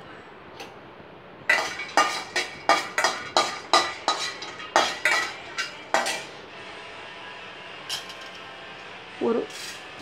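Steel spoon clinking and scraping against a stainless steel kadai as dry whole spices are stirred in it: a quick run of sharp metallic clinks for about four seconds, then only a faint steady hiss.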